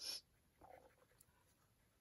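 Near silence, with a short faint swish at the very start and a fainter brush-on-paper scrape a little after half a second: a watercolour brush stroking paint onto paper.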